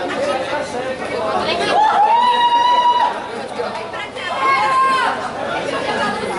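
Audience chatter in a large hall, with high-pitched voices calling out in long held shouts about two seconds in and again near five seconds.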